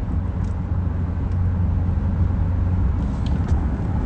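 Steady low rumble of a car heard from inside the cabin, picked up by a phone microphone.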